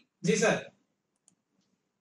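A man's short spoken reply, then near silence broken by a few faint clicks between one and one and a half seconds in.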